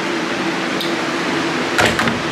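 Room fans running with a steady whir and a faint constant hum. A single knock comes near the end as a hand meets the wardrobe door.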